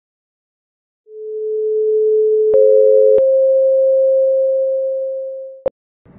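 Electronic pure sine tones over an intro: a steady tone begins about a second in, a slightly higher tone joins it, the first stops soon after, and the higher tone carries on and fades out. A click marks each tone's start and stop.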